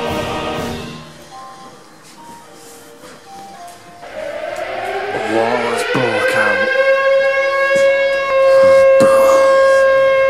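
Music fades out about a second in. From about four seconds an air-raid siren winds up, its pitch rising and then holding steady and loud.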